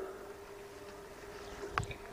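A pause in a man's speech: low outdoor background noise with a faint steady hum, and a short click with a few low knocks near the end.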